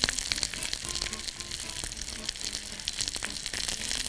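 Chicken kofta frying in oil in a pan on a gas hob: a steady sizzle with many small crackles and pops.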